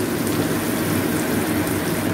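Sliced onions frying in hot oil in a kadai, a steady, even sizzle.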